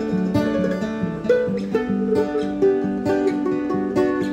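Mandolin picking a lead over an acoustic guitar in an instrumental passage, without singing.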